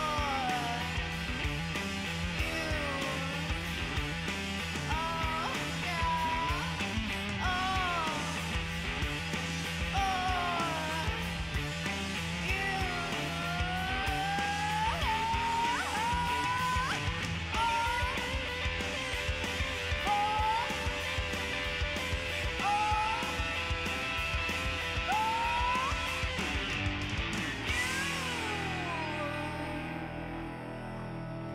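Live alternative rock band playing a song: electric guitar over a steady beat and bass, with a woman singing a sliding melody. The music thins out near the end.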